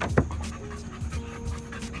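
A dog panting close to the microphone, over steady background music.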